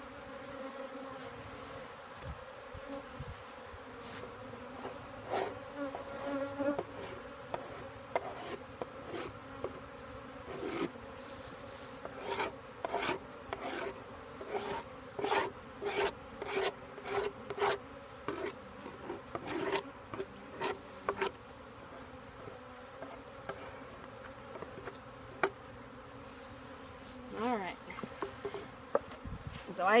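Honeybees buzzing steadily around an opened hive, over a run of short repeated brush strokes scraping a hive bottom board clean, thickest through the middle of the stretch at roughly one or two strokes a second.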